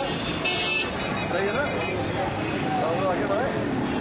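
Street traffic noise with a horn tooting briefly about half a second in, then indistinct talking voices of people in the crowd.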